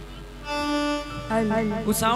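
Live stage-band instrumental music: after a quiet start, a loud held note about halfway in, then a second sustained note, with a short sharp crackle just before the end.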